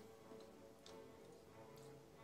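Faint background music with held notes, and a few light ticks of a stylus tapping on a tablet's glass screen.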